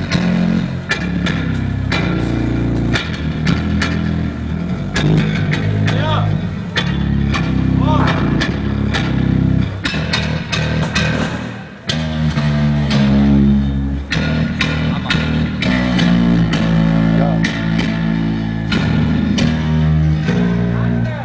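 Electric bass guitar played through a stage PA at a soundcheck: loud sustained low notes changing every second or two, with sharp hits throughout.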